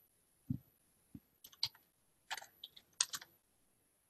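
Computer keyboard typing: a few short, irregular runs of key clicks, the first a duller low thump.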